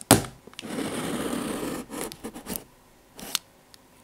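Knit-gloved hands handling a taped cardboard parcel, close-miked: a sharp tap on the box, then a rub across the cardboard lasting about a second, followed by a few light scratches and taps.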